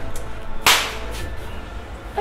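A single sharp, loud crack about two-thirds of a second in, like a whip or slap, over a low steady hum.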